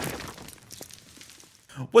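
Tail of a crashing, shattering sound effect for a wall breaking apart, fading away over the first second with a few faint ticks of falling debris.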